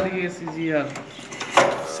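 A sharp mechanical clack about one and a half seconds in, with talking before it: the contacts of a locomotive cam contactor snapping over as its camshaft is turned.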